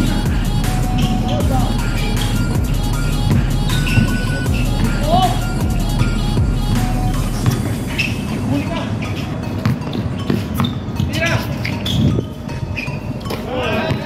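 Background music with a steady low bass line, which drops out about halfway through; after that, people shout over the noise of the court.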